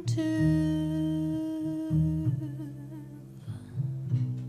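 Jazz vocal held on one long note that wavers with vibrato a little past halfway, over a plucked bass line and guitar accompaniment.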